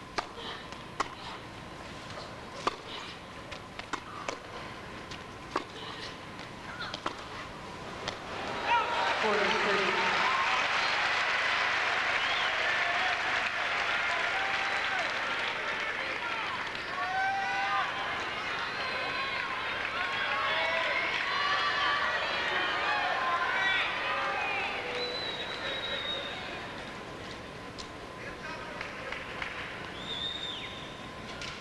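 Tennis rally: racket strikes on the ball, sharp and spaced about one to one and a half seconds apart. About nine seconds in, the arena crowd breaks into loud cheering and shouting that lasts some fifteen seconds before dying down.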